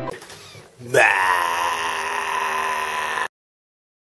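After about a second of soft noise, a loud, drawn-out wailing cry starts suddenly, sweeps up in pitch, holds for about two seconds and is cut off abruptly.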